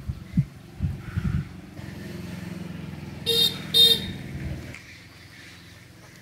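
A passing motor vehicle sounds its horn with two short toots about half a second apart, over the low sound of its engine going by. A few low thumps come in the first second and a half.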